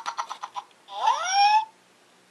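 Tom Babbler Minion talking toy giving a short burst of rapid, even patter, then one high, squeaky rising utterance about a second in.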